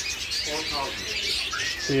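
A flock of caged budgerigars chirping and chattering continuously, with a short whistled note near the end.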